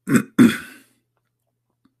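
A man clearing his throat with two short, loud coughs in quick succession, the second a little longer, all within the first second.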